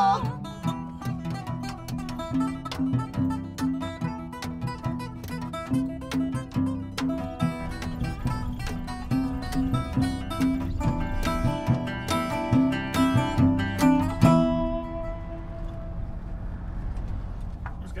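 Instrumental outro of a folk-country song: a metal-bodied resonator guitar and an acoustic guitar picking crisp notes, closing on a final chord about 14 seconds in. After that only a low rumble remains.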